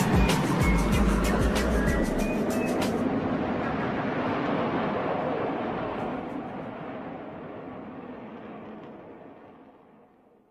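Instrumental outro of a hip-hop track with no vocals. The drums, hi-hats and deep bass stop about three seconds in, and the remaining sound fades out slowly until it is almost gone by the end.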